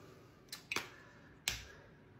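Several short, sharp clicks and a knock, the loudest about one and a half seconds in: handling noise from a plastic bag of sour cream being squeezed over the chili and a skillet being gripped.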